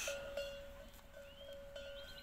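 Quiet pasture with a faint, steady ringing tone held throughout and a brief faint rising chirp about halfway through.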